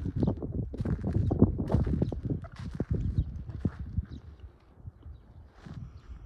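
Footsteps crunching on gravel and dirt, a run of irregular steps that dies down about four seconds in.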